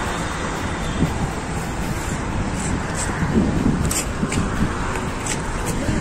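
Steady outdoor rumble of road traffic, with faint voices now and then.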